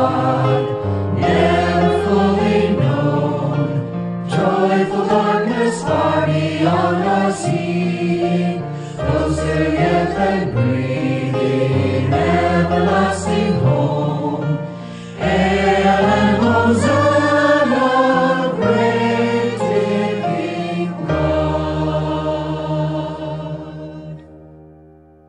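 A slow hymn sung by voices with instrumental accompaniment. The verse closes on a long held chord that fades out near the end.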